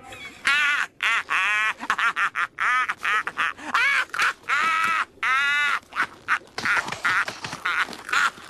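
Squidward's cartoon voice laughing hard in a long run of short bursts, each rising and falling in pitch, a few a second.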